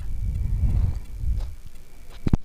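A low, steady rumbling noise with no clear tone.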